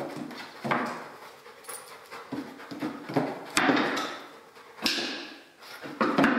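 A Belgian Malinois detection dog panting and sniffing in irregular bursts as it searches scent boxes nose-down, with a couple of sharp knocks on the wooden boxes about midway.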